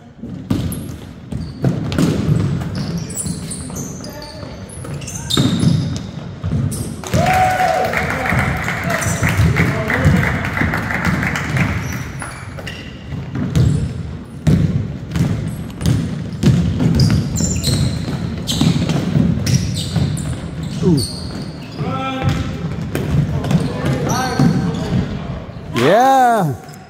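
A basketball bouncing on a hardwood gym floor as it is dribbled and passed during a game, with voices shouting from players and spectators.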